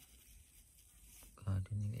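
Faint, even background hiss for about a second and a half, then a man's voice saying a short word near the end.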